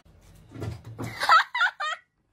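A person laughing: three quick, high-pitched bursts of laughter in the second half, after a faint low rumble.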